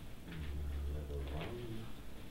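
A man's low, wordless hum, like a drawn-out "mm", lasting about a second.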